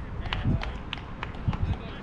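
Distant voices of softball players calling out across the field, with a few sharp clicks, about three a second, and a low rumble on the microphone.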